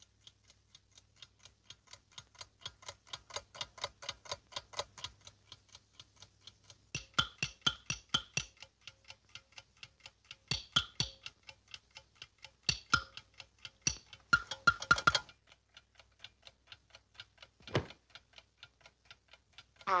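Cartoon alarm-clock ticking sound effect: rapid, even ticks, about four to five a second, fading in at first, then swelling into stretches of louder, ringing ticks, with a single louder tick near the end.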